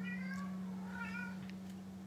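A house cat meowing twice, faintly, the second meow rising and then falling in pitch. A steady low hum runs underneath.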